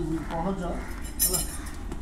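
Low voices with a brief metallic clink a little over a second in.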